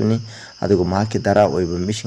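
A man speaking in Manipuri, pausing briefly near the start, over a steady high-pitched insect drone.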